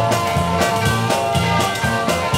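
Rock band playing live in an instrumental stretch with no singing: electric guitar over bass and a steady, even beat.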